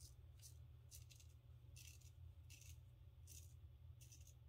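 Faint scraping of a Gem Damaskeene single-edge safety razor, fitted with a double-edge blade, cutting lathered stubble on the neck against the grain, in about six short strokes.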